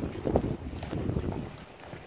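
Hoofbeats of a horse going past at speed on sand footing: a quick run of dull thuds that fades away after about a second and a half.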